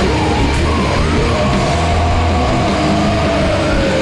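Doom/stoner metal band playing loud and heavy, with no vocals. A held high note slowly falls in pitch through the second half.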